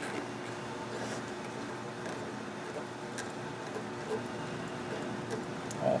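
Steady faint hum with a few light clicks as a vacuum oven's valve knob is turned open.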